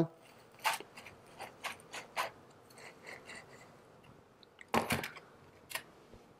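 Wooden dowel rod pushed and twisted down into moist potting soil in a plastic tub, making short scratchy, gritty rustles, with a louder cluster of scrapes about three-quarters of the way in.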